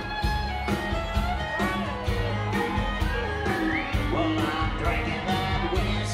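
A live band playing an instrumental passage: guitars over a steady beat, heard through the crowd's recording in the hall.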